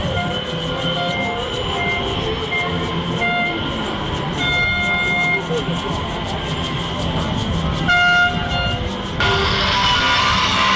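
Street parade noise: voices and music mixed with short held horn notes at a few different pitches, with a louder toot about eight seconds in. Near the end the sound changes suddenly and louder music takes over.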